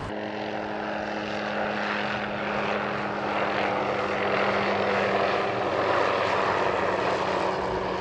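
Helicopter flying overhead: a steady engine hum with several held tones under a rushing noise. It grows a little louder through the middle and cuts off suddenly at the end.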